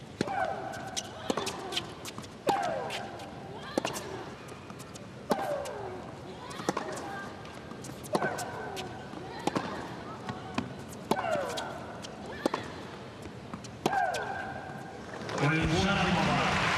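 Tennis rally: the racket strikes the ball about every one and a half seconds. Every other shot, the player's own, comes with a loud shriek that falls in pitch. Crowd applause breaks out near the end as the point is won.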